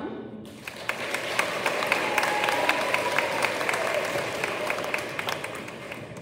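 Audience applauding, starting about half a second in, holding for several seconds and fading near the end.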